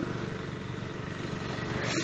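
Steady low background rumble, even in level, like a running motor heard at a distance.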